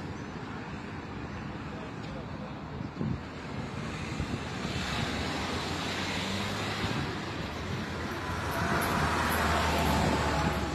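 Road traffic passing along a city street, steady at first and growing louder through the second half, with a bus's engine running close by near the end.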